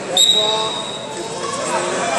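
Referee's whistle: one shrill blast of about a second shortly after the start, stopping the wrestling bout, with voices in the hall behind it.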